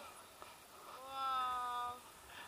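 A woman's short, held vocal sound, like a drawn-out "ooh", on one pitch that sinks slightly. It lasts about a second in the second half and stops abruptly.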